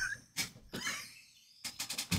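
Quiet, stifled laughter from a person: a few short, breathy bursts near the end, after a brief trailing voice at the start.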